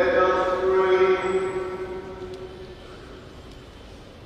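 A voice chanting a short line in long held notes, dying away about two seconds in.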